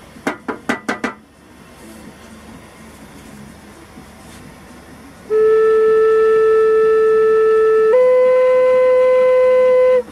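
A cough of several quick bursts, then a few seconds later a Native American flute sounds a loud, steady held note that steps up to a slightly higher note about eight seconds in. The note is being checked against a 440 Hz tuner and reads flat, so its tone hole needs enlarging.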